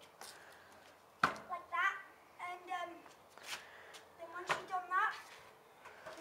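Stunt scooter landing bunny hops on paving slabs: two sharp knocks, one about a second in and one about two seconds later.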